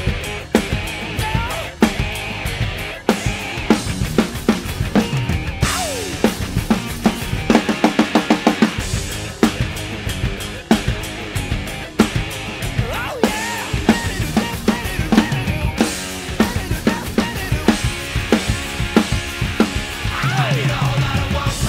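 1966 Ludwig Super Classic drum kit with Zildjian cymbals played in a driving rock beat, bass drum, snare and cymbals, over a hard-rock backing track. Notes in the track slide up and down, and a run of rapid strokes comes about eight seconds in.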